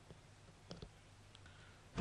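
Near silence, with a low faint hum and a few faint, brief clicks, a small cluster of them about three-quarters of a second in.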